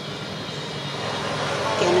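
Steady background engine noise of a passing vehicle, slowly growing louder, with a woman saying 'okay' near the end.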